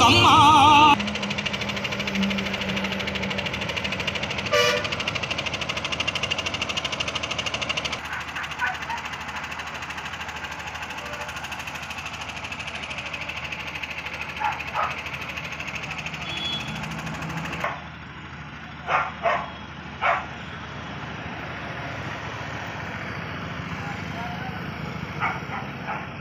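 Roadside outdoor ambience with passing traffic. Loud music stops about a second in, and a few short sharp sounds come through, three of them close together about two-thirds of the way through.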